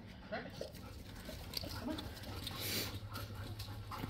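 Labrador retrievers making faint, brief whines and small noises while being petted, over a steady low hum.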